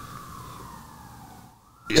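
A siren wailing faintly in the background as a single tone whose pitch slowly falls, with a brief dropout near the end.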